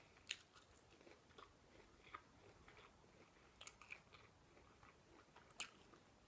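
Faint chewing of a Brussels sprout coated in duck fat, with a few short soft crunches spread through, the sharpest about a third of a second in.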